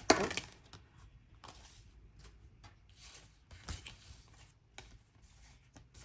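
Oracle cards being handled over a wooden table: a sharp slap of cards dropping onto the wood just at the start, followed by scattered light clicks and taps of cards being shuffled and handled.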